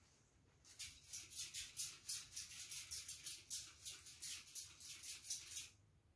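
Trigger spray bottle misting water onto a paper towel: a quick run of short hissing squirts, about four a second, starting just under a second in and stopping near the end.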